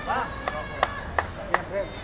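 A person clapping hands four times at an even pace, about three claps a second.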